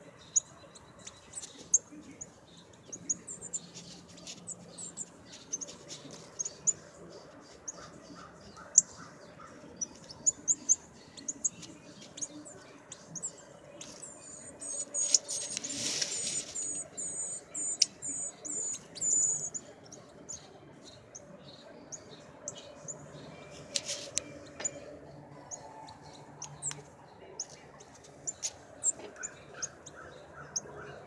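Northern cardinals giving short, sharp chip notes, repeated irregularly. In the middle comes a quicker run of high, evenly spaced notes lasting about five seconds.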